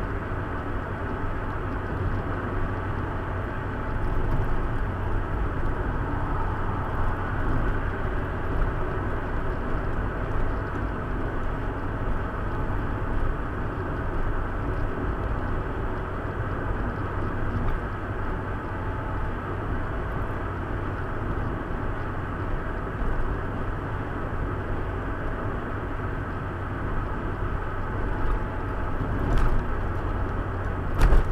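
Car cabin noise while driving at road speed: a steady low engine hum and tyre rumble heard from inside the car. A short click sounds near the end.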